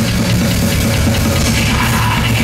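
Live heavy metal band playing loudly and without a break: distorted electric guitar over a drum kit.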